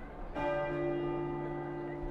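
Large bells ringing, with a new stroke about a third of a second in whose tones ring on after it.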